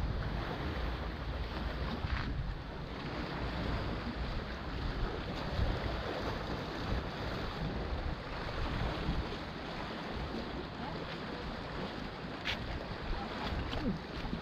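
Steady wind noise on the microphone, with sea waves washing against a rocky shore.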